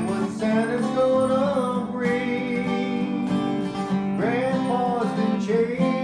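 Acoustic guitar playing a country-style tune, the notes ringing on continuously.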